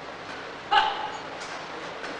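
A short, high squeak of a shoe sole on the badminton court mat, once, about three-quarters of a second in.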